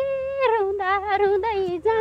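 A woman singing a drawn-out, wavering melodic phrase of a Nepali dohori folk song, held notes sliding down in pitch, over steady sustained tones underneath.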